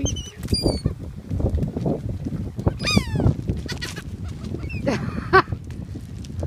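Seagulls calling: short harsh cries that fall in pitch, a few just after the start, a longer run of them about three seconds in and more near the end. Under them runs a steady low rumble with scattered crunching.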